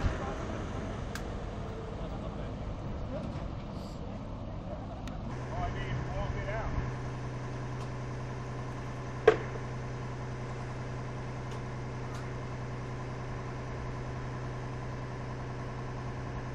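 Outdoor noise with faint voices, then about a third of the way in a fire truck's engine idling steadily takes over. There is a single sharp knock near the middle.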